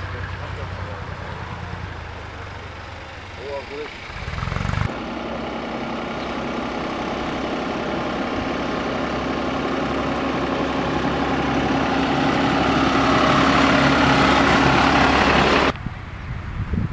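Farm tractor engines running: a low hum at first, then from about five seconds a steady engine note that grows louder over about ten seconds and cuts off abruptly near the end.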